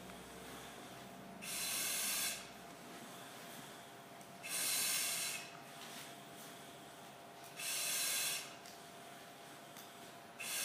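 Firefighter breathing on an SCBA facepiece and regulator: a hiss of air with each breath, three times, each about a second long and about three seconds apart.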